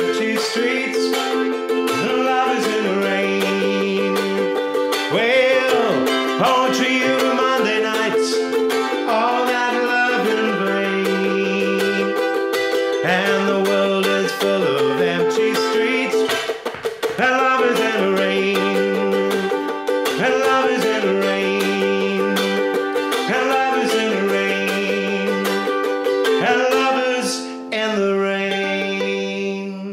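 Ukulele strummed in a steady chord pattern, the chords changing every second or two, with a man's voice singing over it at times.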